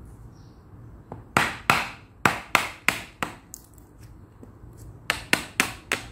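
Hammer blows on a wood chisel cutting into a round of log, chipping wood out. A quick run of about seven blows starts after a second or so, then there is a pause and three more blows near the end.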